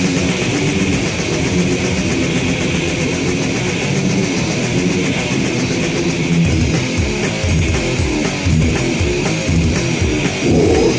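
Death metal demo recording: distorted electric guitar riffing over bass and drums.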